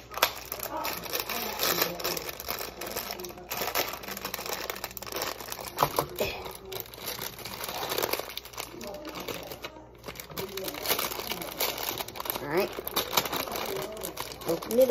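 Packaging crinkling and rustling as someone struggles to open it, with scattered small clicks.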